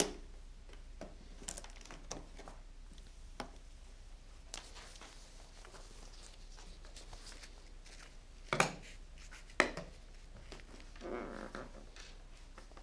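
Handling of a hard plastic carrying case: light clicks and taps, then two sharp snaps about a second apart as its latches are opened, followed by a short scuff as the lid is lifted.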